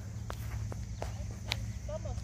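Light footsteps walking, a few soft clicks about every half second, over a steady low rumble.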